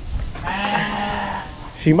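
A Rideau sheep bleating once, a single steady call about a second long that holds one pitch.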